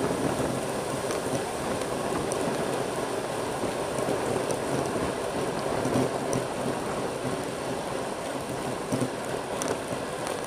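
Wind rushing over the camera microphone and road-bike tyres humming on asphalt at speed, a steady, even rushing noise.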